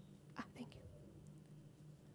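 Near silence: room tone with a steady low hum, broken by a brief whisper about half a second in.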